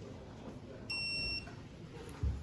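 Snap-on electronic angle-measuring torque wrench giving one steady, high-pitched beep of about half a second, near the middle. It signals that the set 90-degree turn on a cylinder head bolt has been reached.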